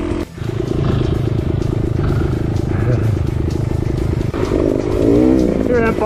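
Dirt bike engine running on a trail ride, heard from the rider's helmet camera. There is a short break just after the start, then steady engine sound, with the revs rising and falling about two-thirds of the way through.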